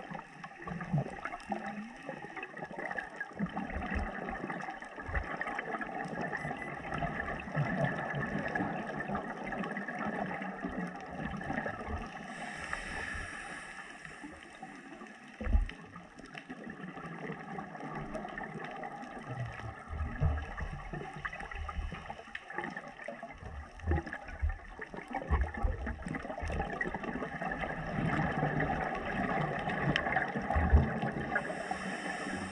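Underwater sound of scuba diving: a regulator's breathing with gurgling bubbles of exhalation, one brighter rush of bubbles a little before halfway, and scattered low knocks on the camera housing, with one sharp thump about halfway.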